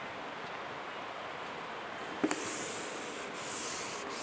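Whiteboard duster wiping a drawing off the board: a knock as it meets the board about halfway in, then two hissing wipe strokes of about a second each.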